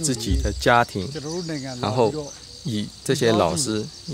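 A man speaking, with a steady chirring of insects, crickets by the sound tag, in the background.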